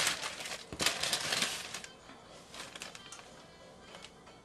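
Paper sheets crinkling and rustling as tortilla dough is handled and pressed, with a run of small crackles in the first couple of seconds, then fading to faint rustling.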